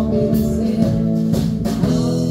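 A small live band playing: electric guitar, mandolin, ukulele, upright bass and drums, with a steady drum beat about twice a second.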